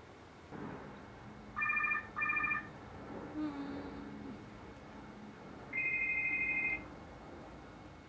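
Electronic telephone ringer trilling: two short rings close together about a second and a half in, then one longer ring about six seconds in.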